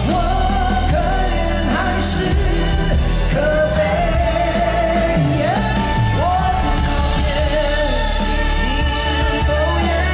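Live pop-rock band with male vocals belting long held notes that slide between pitches, over a steady backing of bass, drums and keyboards.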